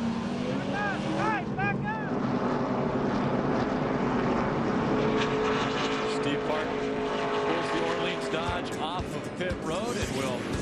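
V8 engine of a NASCAR Craftsman Truck Series race truck pulling away from a pit stop and running down pit road, a steady multi-toned drone.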